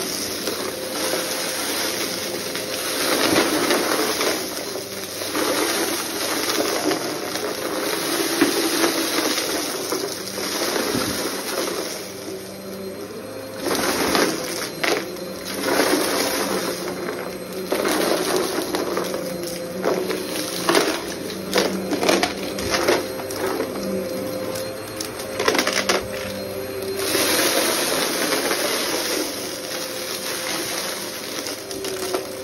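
Upright bagless vacuum cleaner running steadily on carpet, picking up shredded paper and small debris. Pieces rattle and crackle up through the nozzle in quick clusters through the middle stretch.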